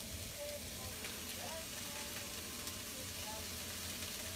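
Onions and red peppers sizzling steadily in a frying pan over raised heat.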